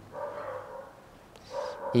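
A faint, high-pitched animal whine, drawn out at the start and heard again near the end.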